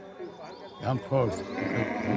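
A man's voice speaking Hindi in short phrases; no other sound stands out.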